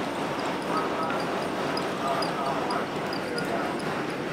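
Vintage streetcar running along the line, heard from inside the car: a steady rattle and clatter of the car body and running gear over a low hum, with faint voices in the background.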